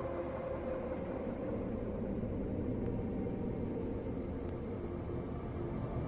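Steady low rumble of a moving bus heard from inside: engine and road noise, with two faint ticks midway through.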